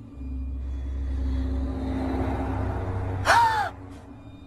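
Horror-film sound design: a low rumbling drone swells for about three seconds, then breaks off with a sudden short, high shriek that rises and falls in pitch, the loudest moment, just before the end.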